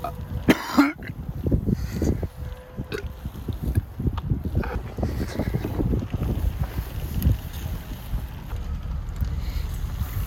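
Wind buffeting the phone's microphone outdoors: an uneven low rumble that rises and falls. A short laugh comes about half a second in.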